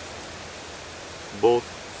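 Steady, even outdoor background hiss, with one spoken word near the end.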